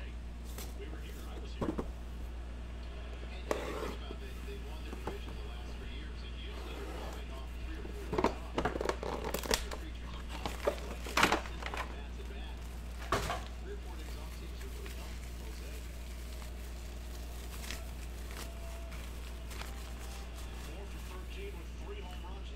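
Hands handling and unwrapping a foil-wrapped card box: intermittent crinkling of foil and short taps and rustles, busiest midway through, over a steady low hum.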